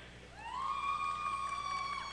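A single long, high-pitched note from the audience cheering a graduate as the name is called. It rises briefly, then holds one steady pitch for about two seconds.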